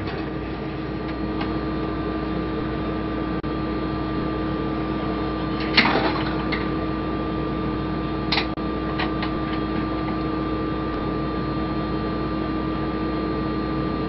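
Steady hum of the International Space Station's cabin ventilation fans and equipment, with constant tones running through it. Brief handling noises sound about six seconds in and again about eight and a half seconds in.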